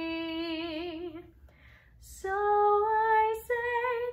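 A woman singing unaccompanied: she holds the song's final long note with a widening vibrato, lets it go about a second in, takes an audible breath, and starts a new phrase of held notes that step upward in pitch.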